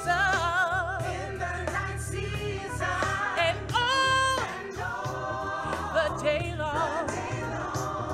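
A woman singing a gospel solo with a wavering vibrato over low instrumental accompaniment, holding one note briefly about four seconds in.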